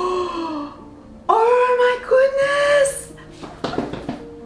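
A woman's wordless, high-pitched cries of excited delight: a short cry at the start, then a longer, louder squeal with a brief break about a second in. Faint background music runs under it.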